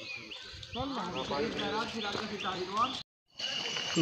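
Faint voices of people in the background, with a bird chirping repeatedly over them. The sound drops out completely for a moment about three seconds in.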